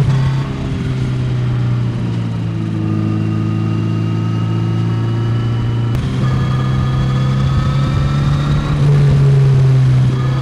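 2024 Kawasaki Z900RS Cafe's inline-four engine running steadily under way, played back sped up. The engine note shifts in pitch, jumps once partway through, and is a little louder near the end.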